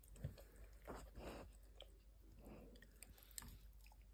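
Faint, irregular chewing of a dog gnawing on a plastic chew stick, with a few sharp clicks of teeth on the stick.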